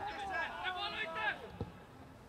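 A man's voice talking faintly, quieter than the commentary around it, with one short thud about one and a half seconds in.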